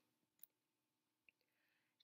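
Near silence: room tone, with a faint click about half a second in.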